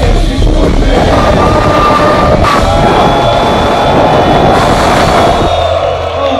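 Loud live hip hop music over a concert PA, with heavy bass and crowd noise mixed in. About five and a half seconds in, most of the music drops out, leaving a low held bass tone.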